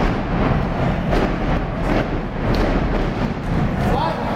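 A steady, loud rumbling din with several dull thuds scattered through it, from wrestlers striking and stomping in the ring.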